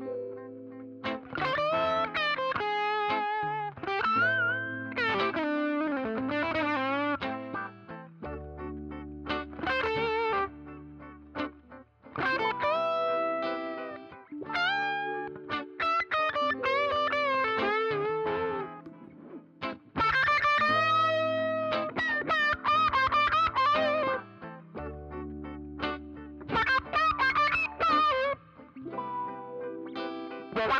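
Strat-style electric guitar played through effects pedals with a distorted tone: melodic phrases with bent, wavering notes over held low notes, broken by a few short pauses.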